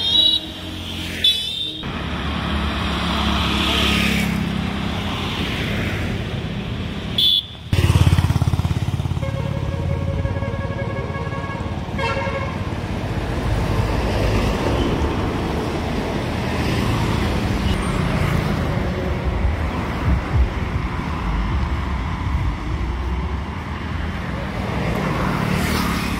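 Road traffic with motorcycles and cars passing. A vehicle horn sounds as one steady held note for about three seconds, about nine seconds in.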